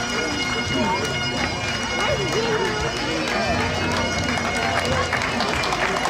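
Bagpipes playing, their steady held notes sounding throughout, with people talking over them.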